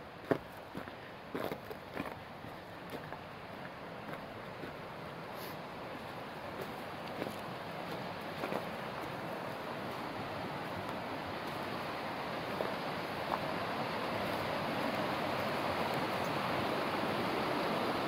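A rocky creek rushing over stones, a steady noise that grows louder as the walker comes down to the bank. A few footsteps on dry leaves in the first two seconds.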